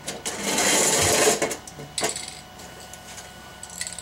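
Aerosol spray paint can in use: a loud, dense burst lasting about a second, followed by a sharp click about two seconds in.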